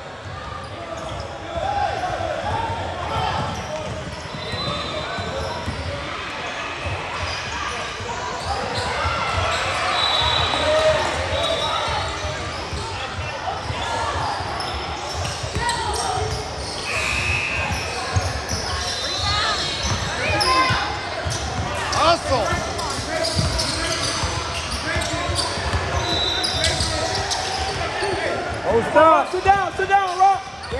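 A basketball bouncing on a hardwood gym floor during play, with the chatter of players and spectators echoing through a large indoor hall.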